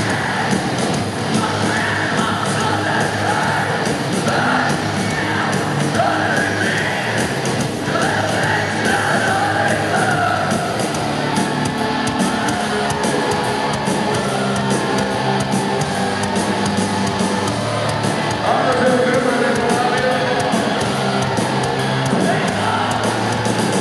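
Heavy metal band playing live in an arena, with distorted guitars, drums and vocals over crowd noise, heard loud and reverberant from the stands.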